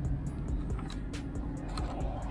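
Low rumble inside a pickup truck's cab, with music playing and a few scattered clicks.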